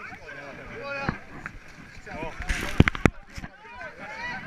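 Chatter of people nearby, not close to the microphone, with a short rush of noise and two or three sharp knocks about three seconds in.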